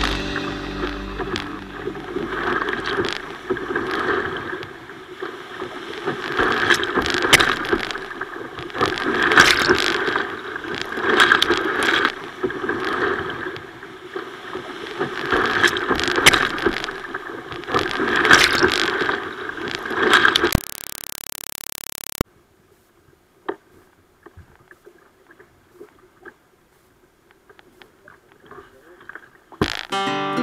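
Whitewater rushing and waves splashing against a kayak's bow, heard through an action camera's housing, surging about every two seconds as the boat runs a rapid. Two-thirds of the way in there is a short burst of steady hiss, and then the sound drops to a faint murmur of calmer water.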